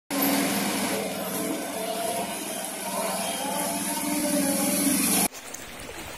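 Motor scooter engine running steadily as it rides through floodwater on a flooded street. It cuts off abruptly just after five seconds.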